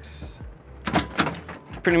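Paddle latch on an ambulance's exterior compartment door being pulled and the aluminium diamond-plate door opening, with a few sharp clicks and knocks about a second in.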